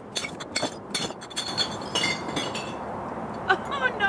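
Empty glass beer bottles clinking and knocking as they are fed one after another into a bottle bank, with a quick run of sharp glass clinks in the first two and a half seconds.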